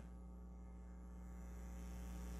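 Faint, steady electrical mains hum: a low buzz with evenly spaced overtones, growing slightly louder toward the end.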